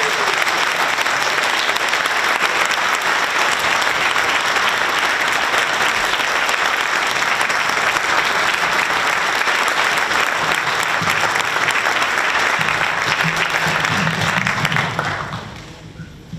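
Audience applauding steadily after a talk, the clapping dying away near the end.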